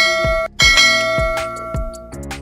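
Background music with a low beat about every half second, overlaid with ringing bell-like chimes: one breaks off about half a second in, and a second one strikes right after and fades slowly.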